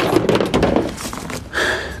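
A sharp knock, then about a second and a half of rattling and rustling as things are handled, with a short rustle near the end.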